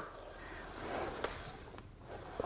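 Yoga EVO ab wheel rolling out across a hardwood floor: a faint rolling noise that swells a little midway, with a couple of light clicks near the end.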